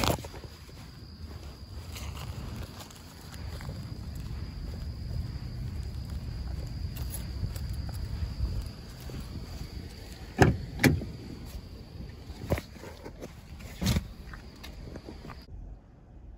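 Handling a delivery bag and getting into a car: a low rumble of movement, then several sharp knocks and clunks a little past the middle, the car door shutting among them. A steady high insect trill stops abruptly near the end.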